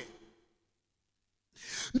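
Near silence, then near the end a short, hissing intake of breath close to a handheld microphone, just before speech resumes.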